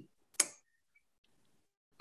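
A single short, sharp click a little under half a second in, amid otherwise near silence.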